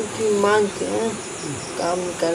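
Crickets chirping steadily in a high, even trill under a man's quieter talk.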